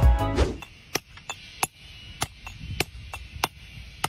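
A hammer striking a hand chisel to split stone into thin tiles: a series of sharp, short strikes, roughly two a second, beginning about a second in.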